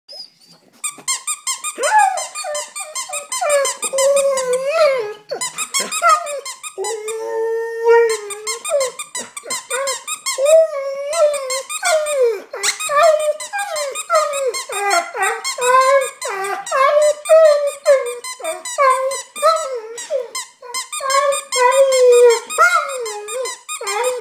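Alaskan malamute crying: a near-continuous string of high, wavering whines that bend up and down in pitch, with one longer, steadier whine about seven seconds in.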